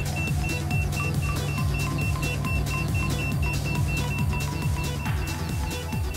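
Background electronic music with a steady beat. Over it, a handheld EMF meter's high-pitched alarm beeps in quick, even repeats and stops near the end: the meter is flagging a high reading beside a running microwave oven.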